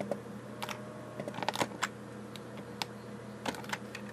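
Computer keyboard keys pressed in irregular clicks, a quick flurry of them in the middle: repeated Ctrl+Z undo presses in Revit.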